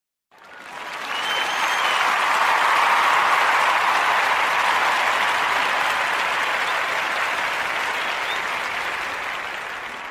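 Crowd applause, swelling in over the first couple of seconds and then slowly fading away.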